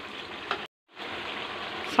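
Thick curry gravy sizzling steadily in a nonstick wok on the stove. The sound cuts out completely for a moment about two-thirds of a second in, then carries on.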